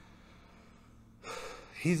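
A man's short, audible intake of breath through the mouth a little past halfway, after a moment of near quiet, just before he speaks again.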